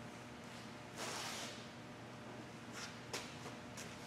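Faint handling noises over a steady low hum: a short scraping rustle about a second in, then a few light clicks near the end.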